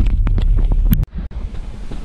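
Wind rumbling on the microphone, with a few sharp handling knocks as the camera is carried. About a second in it cuts off suddenly, leaving a quieter steady low rumble.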